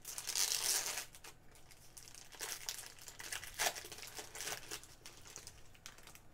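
Trading card pack wrapper being torn open and crinkled by hand. The first second is the loudest; after that come lighter crinkles, with one sharp click about three and a half seconds in.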